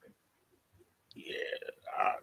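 Near silence, then about a second in a man's short, low voice sound, a throaty "yeah" or a burp, followed by a second brief one at the very end.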